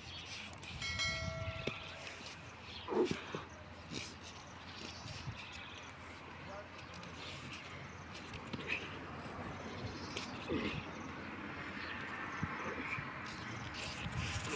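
Two men wrestling on a concrete floor: clothing and bodies shifting, with short grunts around 3 seconds in and again near 10 seconds. About a second in there is a brief electronic chime from a subscribe-button animation.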